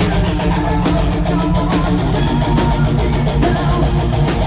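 A heavy metal band playing at full volume: distorted electric guitars, bass guitar and a drum kit in a dense, steady wall of sound.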